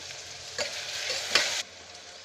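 Onions, green chillies and diced bottle gourd sizzling in oil in a pressure cooker while a spoon stirs turmeric through them, with a couple of sharp scrapes of the spoon against the pot. The sizzle gets louder for a second and then cuts off suddenly about a second and a half in.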